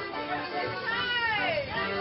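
Accordion playing a morris dance tune. About a second in, a high-pitched cry slides downward in pitch over the music for about half a second.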